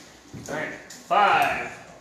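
A person's voice speaking in a room, with one loud emphasised syllable about a second in.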